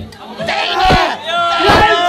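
A group of people shouting and cheering, with several drawn-out yells. It rises from a brief lull at the start and gets louder in the second half.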